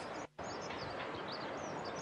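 Small birds chirping repeatedly over a steady outdoor hiss, broken by a brief drop to silence about a third of a second in.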